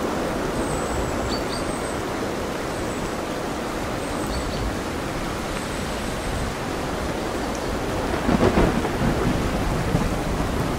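Steady, dense rain mixed with ocean surf. Faint, short, high bird calls come now and then, and a louder, crackling swell of storm noise comes about eight seconds in.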